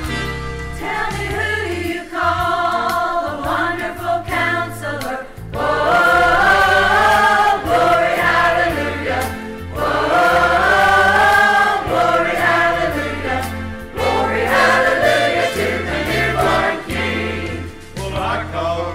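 Church choir singing a gospel Christmas song over instrumental accompaniment with a stepping bass line.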